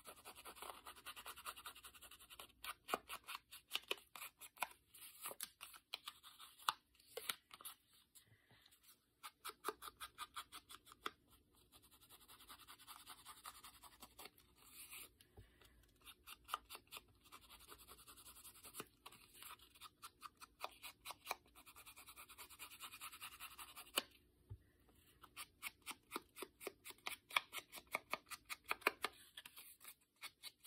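Foam ink blending tool with a wooden handle scrubbing ink onto the edges of a paper card: quick repeated brushing strokes, several a second, in runs with short pauses between them.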